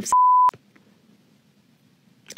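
A censor bleep: one steady high-pitched beep, about half a second long, laid over a spoken word to mask it, cut off sharply at both ends.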